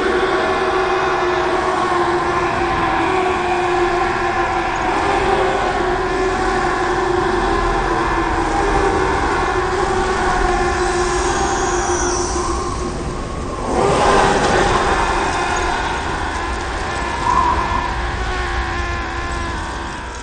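Film soundtrack: a loud, sustained layered chord-like drone that starts suddenly and holds with small shifts, with a short whooshing burst of noise about fourteen seconds in.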